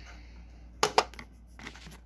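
Small hard plastic toy case handled and clicked shut: two sharp clicks about a fifth of a second apart a little under a second in, followed by fainter handling rattles.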